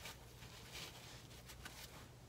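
Near silence: quiet room tone with a faint low steady hum and faint handling of fabric being smoothed flat by hand.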